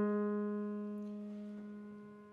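A grand piano chord held and ringing, fading slowly and evenly with no new notes played.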